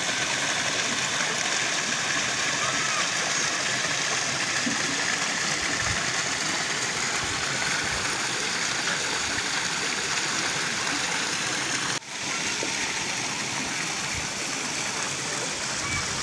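Water pouring from a stone fountain spout into a pond, a steady splashing rush, broken only by a momentary dip about twelve seconds in.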